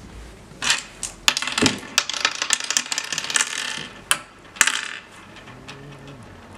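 Oware seeds clattering as they are scooped from and dropped into the hollow pits of a wooden oware board: a quick run of small clicks for about three seconds, then two sharper clacks.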